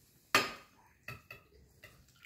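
Metal dishware clanking: one sharp, ringing clank about a third of a second in, then three lighter metallic clinks over the next second and a half.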